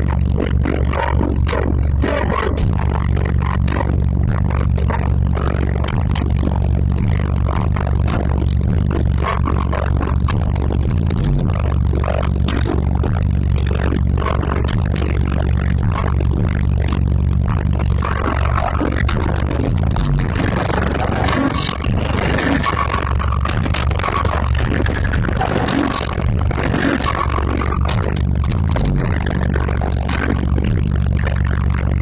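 Loud bass-heavy music played through 18-inch Sundown subwoofers on a CT Sounds 7k amplifier inside a Jeep's cabin, the deep bass steady and dominant. Panels and trim rattle and scrape against the bass.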